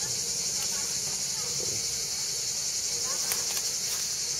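Steady, high-pitched chorus of insects buzzing without a break, with a few faint clicks about three and a half seconds in.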